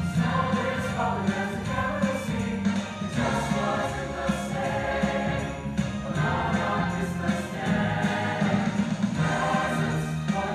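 A choir singing in parts over an instrumental accompaniment with a steady bass line.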